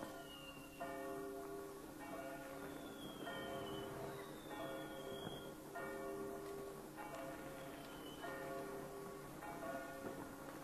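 A church bell tolling at the stroke of midnight, one ringing stroke about every second and a quarter. A few thin, faint whistles fall in pitch above it.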